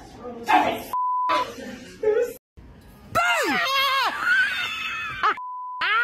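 Two steady, high-pitched censor bleeps of about half a second each, one about a second in and one near the end, with short bits of speech around the first. About three seconds in, a person screams loudly for about two seconds, the pitch wavering and falling.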